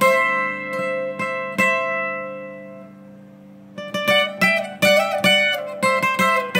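Twelve-string acoustic guitar played slowly in bolero style: a few plucked notes and a chord that rings out and fades, then a quick run of plucked notes starting about four seconds in.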